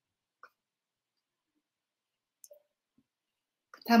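Near silence in a video-call pause, broken by a couple of faint short clicks, then a woman starts speaking just before the end.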